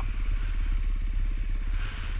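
Dirt bike engine running steadily under way on a trail, its exhaust a fast, even pulse over a low rumble.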